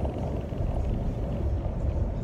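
Cabin noise of a moving car: a steady, low road-and-engine rumble heard from inside the car.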